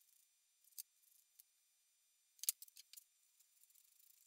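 A few short, sharp clicks and taps from a wooden hand-saw handle and sandpaper being handled. They cluster about two and a half seconds in, where one knock is the loudest, and are otherwise near silence.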